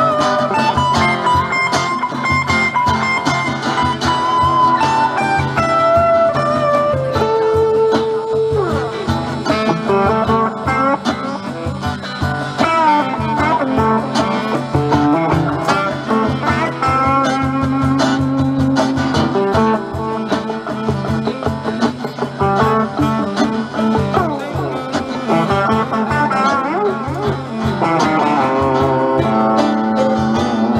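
Electric guitar solo on a Stratocaster-style guitar, a single melodic line with bent notes, over a live blues band's steady rhythm of cajón and guitar.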